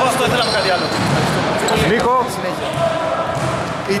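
People talking in a reverberant indoor gym, with basketballs bouncing on the hardwood court.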